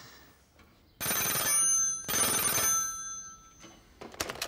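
Telephone bell ringing twice, each ring about a second long, the first starting about a second in and the second fading away.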